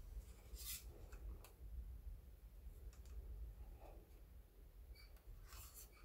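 Faint handling noise from a plastic figure base being turned over in the hands: a few light scrapes and clicks, about a second in and again near the end.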